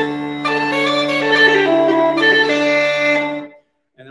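Uilleann pipes sounding: the drones hold a steady low chord while a few changing chanter notes play above it. All of it stops abruptly about three and a half seconds in.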